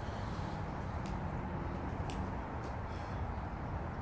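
Steady low background rumble outdoors, with a couple of faint sharp clicks about one and two seconds in.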